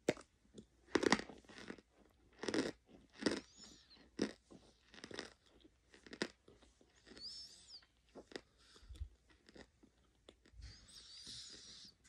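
A person chewing crunchy chunks of laundry starch close to the microphone: loud, irregular crunches roughly once a second in the first half, then softer chewing.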